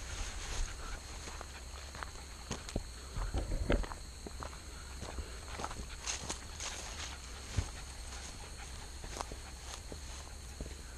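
Footsteps crunching on a gravel path, uneven and heaviest about three to four seconds in, over a steady high thin whine in the background.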